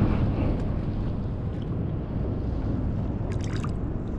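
Steady wind noise on the microphone out on open water, with a brief cluster of sharp clicks about three and a half seconds in.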